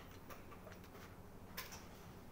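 Small clicks of wooden chess pieces and a chess clock during a blitz game: a few faint taps, then one sharper click about one and a half seconds in.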